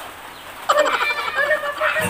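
A woman laughing in short, high-pitched bursts, starting a little under a second in.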